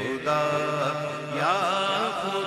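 Unaccompanied Urdu naat: a man's voice sings long, melismatic phrases whose pitch rises and falls. A low, steady held tone sits underneath for about a second.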